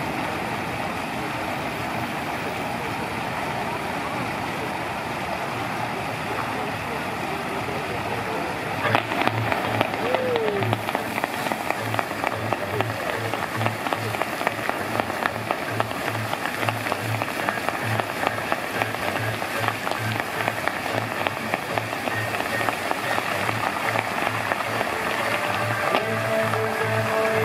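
Musical fountain splashing, with voices in the background; about nine seconds in, the show's music starts with a steady bass beat and plays over the rush of the water jets.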